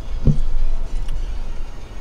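Car cabin noise at freeway speed: a steady low road and engine rumble, with one brief thump about a quarter second in.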